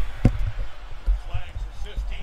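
Faint TV football broadcast commentary, with several dull low thumps, the loudest right at the start.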